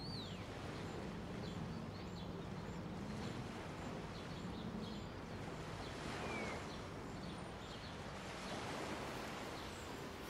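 Steady outdoor ambience: an even background noise with a low hum, and small birds chirping faintly now and then.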